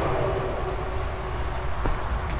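Steady low outdoor rumble with a faint hum under it, and soft rustling of soil and roots being handled, with one small click near the end.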